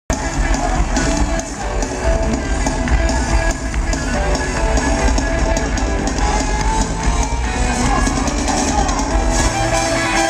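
Live R&B band playing loudly, with a drum kit and a heavy bass line under held keyboard notes.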